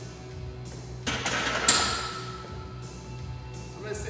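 Loaded barbell set back onto the rack's hooks about a second in: a clank and clatter of metal that rings for about a second, over background music.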